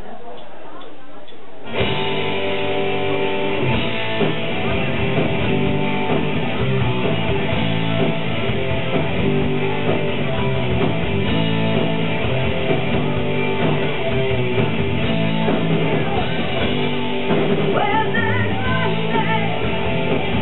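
Live metal band with electric guitars and drums crashing in together about two seconds in, then playing on loud and dense. Near the end a high, bending melodic line rises over the band.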